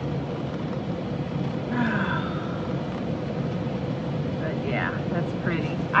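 Steady hum and hiss of a running car heard inside its cabin, with a faint constant tone. A voice murmurs faintly about two seconds in and again near the end.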